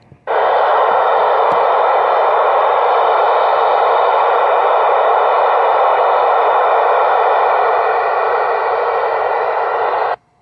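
Loud, steady static from a ham radio's speaker while it receives the satellite downlink with nothing decodable on it. It starts just after the start and cuts off suddenly at the very end.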